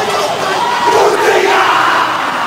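A rugby team's haka: many men's voices shouting the chant together in unison, over stadium crowd noise, growing a little louder about a second in.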